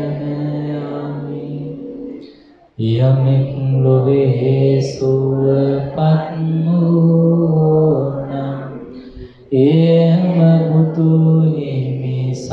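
A male voice chanting in a long, steadily held tone, the intoned chanting that opens a Buddhist sermon. It breaks off briefly twice, about three seconds in and again after about nine seconds.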